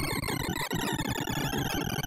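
Sorting-algorithm visualizer audio from a poplar heap sort: a dense, very rapid stream of synthesized beeps, each pitched by the value of the array element being read or written, merging into a steady jangling cacophony. The overall pitch drifts slowly downward.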